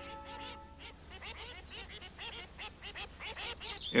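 A held music chord fades out within the first second, then ducks quack over and over, many short calls in quick succession.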